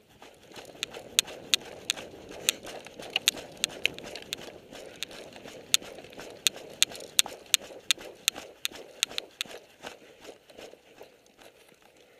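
Footsteps crunching over dry dirt and twigs, with sharp irregular clicks about two or three a second over a steady rustle, thinning out in the last couple of seconds.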